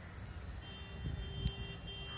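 A steady high-pitched tone with a lower tone under it comes in under a second in and holds, over a low rumble, with one sharp click about midway.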